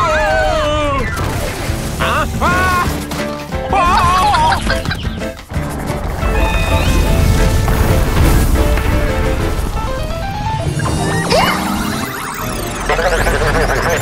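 Cartoon soundtrack of music with crash sound effects: a few sliding, pitched cartoon cries in the first four seconds, then a long low rumble in the middle.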